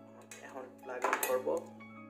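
Light clicking and plastic rattling from handling a small microphone, its clear plastic case and a 3.5 mm cable plug, in two short bursts, the second one louder around the middle. Steady background music plays underneath.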